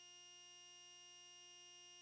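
Near silence with a faint, steady electronic whine of several fixed tones: line noise from a camcorder's output while no recording plays.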